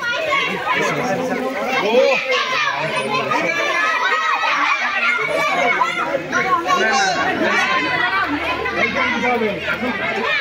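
A crowd of children talking and calling out over one another, with adult voices mixed in: a lively, continuous hubbub of many voices.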